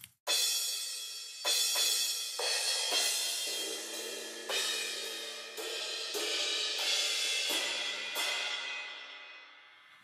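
Sampled ride cymbal sounds from a Roland TD-25 V-Drums module, triggered by strikes on a cymbal pad roughly once a second while the sound is being changed, each hit ringing on into the next with a bright wash. The last ride, a short-tail setting, dies away near the end.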